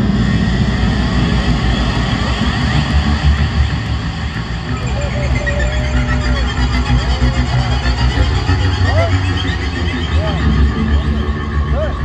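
Live rock band playing through a concert hall PA, with a lap steel guitar sliding between notes in short swooping glides over a steady low bass.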